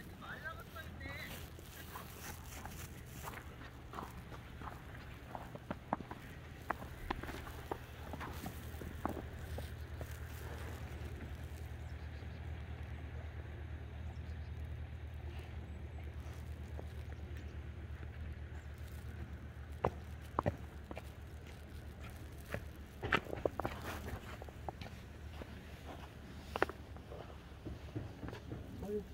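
Footsteps on a snow-covered path, heard as scattered short crunches and clicks that bunch up near the end, with faint voices of other people nearby over a steady low hum.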